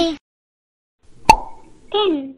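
Cartoon pop sound effect about a second in: one sharp click with a short ringing tail. Near the end a brief call with a falling pitch follows, and a long falling note is dying away at the very start.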